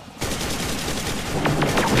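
Rapid machine-gun fire sound effect from the helicopter's guns: a dense, unbroken stream of shots that starts a fraction of a second in.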